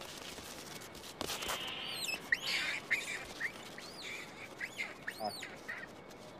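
Hanuman langurs giving short, shrill screeches that rise and fall in pitch, a dozen or so in quick runs from about two seconds in, as the troop is harried by an aggressive new male. A single click sounds about a second in.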